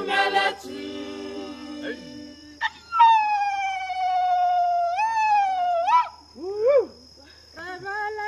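An a cappella choir's phrase breaks off, and a single loud, high wail slides slowly downward for about three seconds, kicking up twice, followed by a short rising-and-falling call. The choir comes back in near the end.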